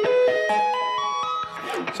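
Electric guitar playing an ascending G-sharp minor arpeggio on the upper register: about seven single notes stepping up in pitch in just over a second, the last ones left ringing.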